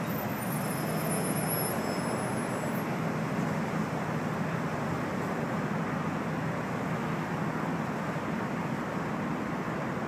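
Steady traffic noise: a constant, unbroken rumble with no single event standing out.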